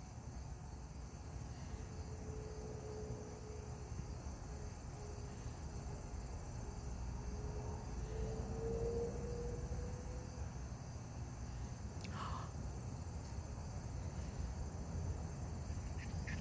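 Faint outdoor ambience with a steady drone of insects and a low rumble. A faint steady hum runs from about two to ten seconds in, and a brief high squeak comes about twelve seconds in.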